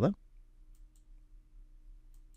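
Two faint computer mouse button clicks in quick succession about a second in, over a low steady hum. The tail of a spoken word is heard at the very start.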